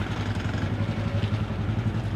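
A small vehicle engine idling steadily, a low even hum with a fast regular pulse.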